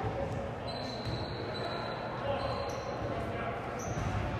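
Live basketball game sound in a gym hall: a ball dribbled on the hardwood court, with indistinct voices of players and spectators echoing in the hall.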